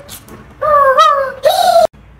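A man's high, hooting 'ooh' calls: three quick calls that each slide in pitch, cut off suddenly near the end.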